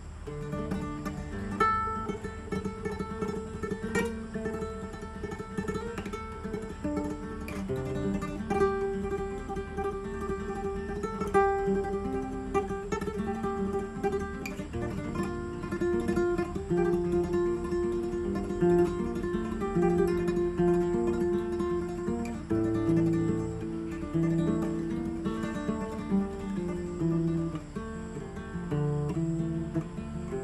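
Instrumental acoustic guitar music: a picked melody over changing chords and bass notes, played steadily throughout.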